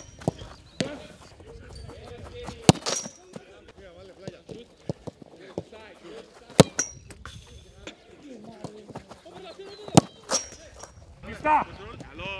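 Footballs being kicked on a grass pitch: sharp single thuds a few seconds apart, the loudest about two and a half, six and a half, and ten seconds in. Distant shouts and calls of players carry underneath.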